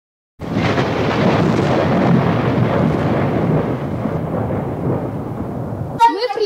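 A loud, steady, noisy rumble with no tune or voice, a sound effect laid under an intro card. It starts suddenly about half a second in, and its upper part thins out after about four seconds.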